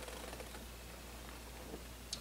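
Faint swallowing and small mouth sounds from a sip of beer, a few soft ticks over quiet room tone.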